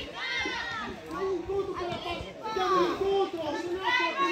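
Several high-pitched women's voices shouting and calling out during a women's football match, overlapping one another, with one voice holding a long call near the end.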